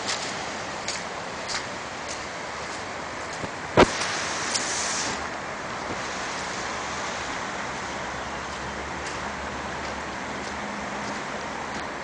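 Steady rushing of fast-moving creek floodwater, with a few faint footfalls and one sharp knock about four seconds in.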